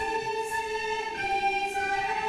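Children playing recorders together with girls singing, a slow melody of long held notes.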